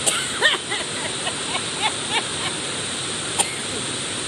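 Heavy rain on the roof of a metal building: a steady, loud hiss with no let-up. Two sharp clicks and a few short bits of voice sound over it.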